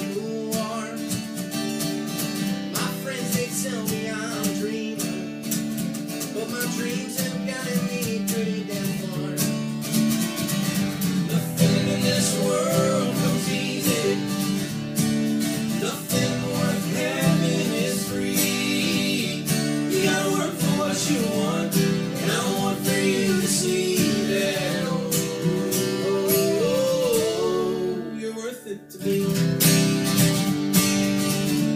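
Acoustic guitars strummed together with men singing a country-pop song, the melody rising and falling over a steady strum. The playing breaks off briefly near the end, then comes back in.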